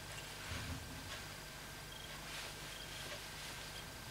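Quiet room tone with a steady low hum and a few faint rustles and light clicks from fly-tying materials being handled at the vise.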